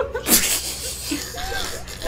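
A person bursting out laughing: a sudden sharp burst of breath about a third of a second in, then quieter breathy laughter.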